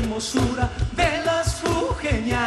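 A live Andean-fusion band playing an upbeat carnival song: a steady, driving drum beat under a wavering melody line.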